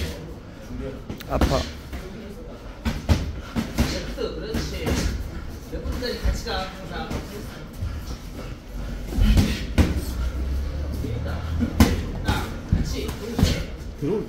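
Boxing gloves landing in sparring: a series of irregular sharp smacks and thuds of punches on gloves, headgear and body, with quicker flurries near the start and again in the last few seconds, over background talk.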